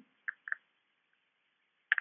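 Computer mouse clicks: two quick clicks, then another close pair near the end, over a faint hiss.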